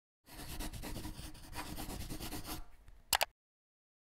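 Electronic glitch and static sound effect: dense crackling noise over a faint steady hum, thinning out and ending in a short, loud electronic blip that cuts off suddenly.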